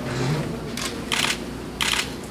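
Camera shutter firing twice, about two-thirds of a second apart, each a short sharp clack.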